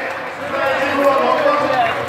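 Indistinct voices over a noisy background, heard through a television's speaker.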